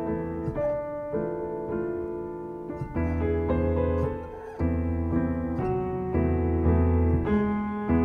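Solo piano improvising slow, sustained chords over held low bass notes, with a new chord struck every second or so.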